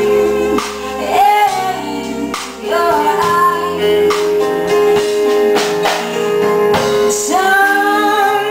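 Live band playing: a woman singing the lead over drum kit, electric guitars and keyboards, with a steady held note running underneath the voice for most of the stretch.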